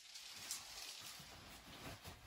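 Quiet room tone between spoken lines, with one faint short knock about half a second in.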